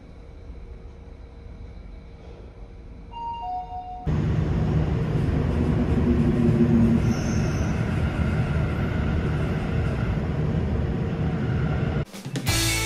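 A short falling two-note chime about three seconds in, then from about four seconds the steady rumble of a subway train running, heard from inside the carriage.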